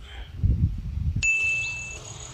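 A steady high ringing tone comes in suddenly a little past halfway and holds, after a short low sound.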